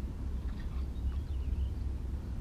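Low, steady wind rumble on the microphone, with a faint high chirp about a second and a half in.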